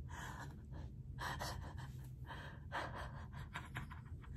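A woman's faint, breathy, voiceless laughter: a few gasping breaths through a wide-open mouth, about a second apart.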